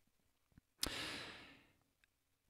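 A man's single audible breath close to the microphone, starting sharply a little under a second in and fading away over about half a second, with near silence around it.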